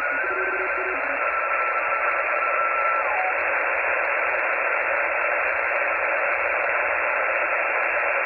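Xiegu G90 HF transceiver's speaker output on the 20-metre band: steady band-noise hiss, with a faint steady tone from a received signal that fades out about three seconds in.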